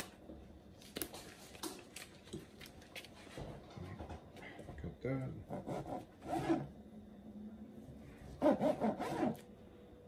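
A long knife sawing back and forth through a smoked brisket's crusty bark onto a plastic cutting board, a quiet rasping scrape, with a man's short "uh" about halfway through.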